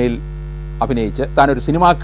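A man speaking in Malayalam, breaking off for about half a second near the start, over a steady low electrical mains hum in the recording.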